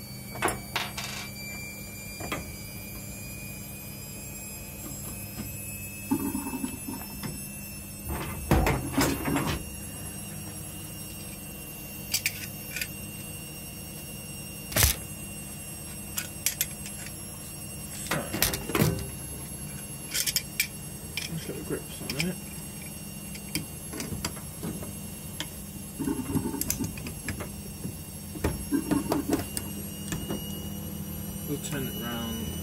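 Scattered clicks and knocks of brass plumbing fittings and copper pipe being handled, over a steady low hum with a faint whine that slowly rises in pitch.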